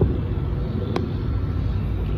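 Steady low rumble of outdoor background noise, with a single faint click about a second in.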